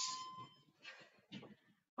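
A faint electronic beep: one steady high tone lasting about half a second, followed by a couple of soft rustles of movement on an exercise mat.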